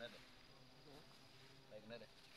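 Near silence: a faint, steady, high insect drone, with a few brief faint voice-like sounds about a second in and near the end.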